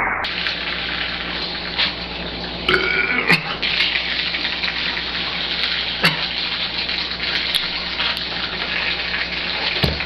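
A man retching and vomiting liquid: a steady splashing gush of vomit, broken by voiced heaves about three seconds in and again about six seconds in. He is bringing up milk that he has gulped down.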